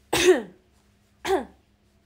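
A young woman coughing twice, about a second apart, each cough sharp and loud with a voiced tail that falls in pitch.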